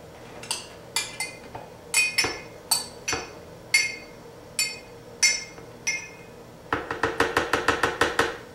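Metal spoon clinking against a glass measuring cup and the blender jar as soaked chia seed gel is scooped out and knocked off: a dozen or so separate ringing clinks about half a second apart, then a fast run of taps in the last second or so.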